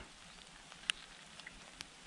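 Light rain falling as a steady soft hiss, with a few sharp ticks close by, the loudest about a second in.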